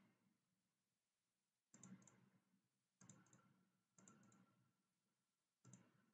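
Faint computer-mouse double-clicks, four of them a second or so apart, over near silence, as folders are opened in a file dialog.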